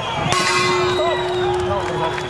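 A steady horn sounds for about a second and a half, marking the end of the third and final round, as the crowd suddenly breaks into cheering.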